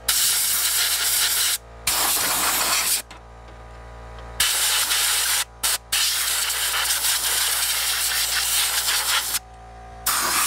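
Air blow gun on a compressor line at 125 psi, blasting compressed air into a desktop PC case in several hissing bursts. There are three blasts of about a second each, two quick taps, then a longer blast from about six seconds in until shortly before the end.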